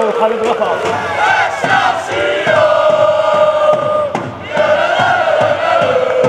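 A crowd of young football supporters chanting together in long sung notes, with a short break about four seconds in.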